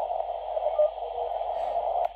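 Receiver audio from a Chinese uSDX/uSDR QRP SDR transceiver being tuned down the 40-metre band in CW mode: steady hiss squeezed into a narrow audio band, with a few faint short tones as signals slide past. The owner calls this radio's audio raspy and distorted.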